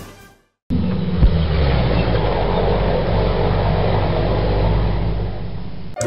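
A motor vehicle's engine running steadily with a low rumble, with one sharp knock about a second after it begins.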